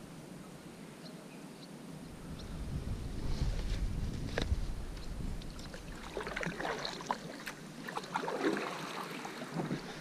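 Kayak paddle dipping and splashing in calm water, with hull knocks and a gust of wind on the microphone, then a run of small splashes and clicks.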